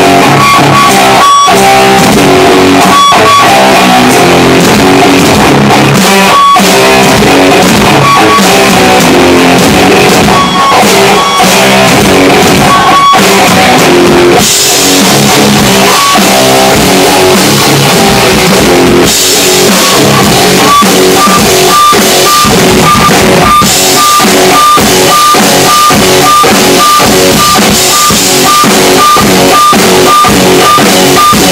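Electric guitar and drum kit playing rock together, loud and continuous. About halfway in the cymbals come in harder, and in the last third a high note repeats about twice a second.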